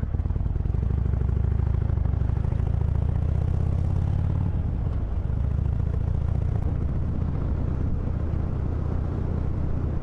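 Harley-Davidson Iron 883's air-cooled V-twin running steadily as the motorcycle rides along, picked up by a microphone mounted inside the rider's helmet.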